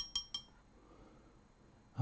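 Paintbrush clinking rapidly against a ceramic palette while mixing watercolour paint, about six ringing clinks a second, stopping about half a second in.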